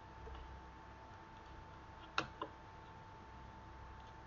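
Two sharp computer mouse clicks about a quarter second apart, a little over two seconds in, over a faint steady high-pitched whine.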